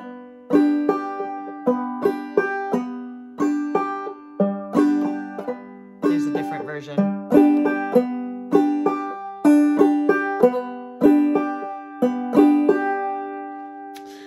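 Banjo played clawhammer style, very slowly: a syncopated drop-thumb pattern of single plucked notes and brushed chord strums in an even, unhurried rhythm.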